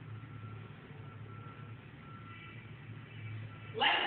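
Faint high beep repeating in short pulses over a low steady hum; a voice starts speaking near the end.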